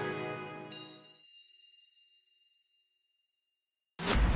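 The final chord of a cartoon's theme music dies away, and a single bright chime strikes less than a second in, rings and fades out over about two seconds, followed by silence.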